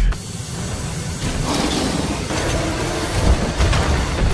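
Trailer sound effects: a steady rushing hiss over a low rumble, with a brief louder swell near the end.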